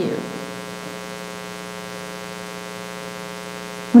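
Steady electrical hum with many evenly spaced overtones, unchanging throughout, heard in the recording's pause between spoken words.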